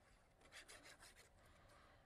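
Near silence, with faint rubbing and rustling of a sheet of card being handled.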